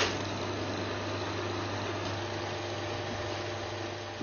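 Film projector running: a steady mechanical whirr with a fine, rapid clatter over a low hum, starting abruptly.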